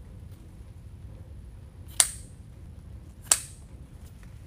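Scissors snipping through ribbon tails: two sharp snips, the first about halfway in and the second just over a second later.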